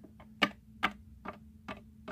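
A small plastic toy cat figurine tapped step by step on a hard tabletop as it is walked along: a steady series of light sharp taps, about two to three a second.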